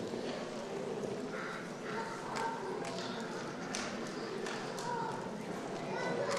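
A man speaking quietly in a large hall, with scattered light clicks and taps.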